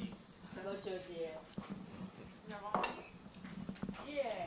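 Indistinct voices of people talking at a dinner table, with a few sharp clinks of spoons against ceramic bowls.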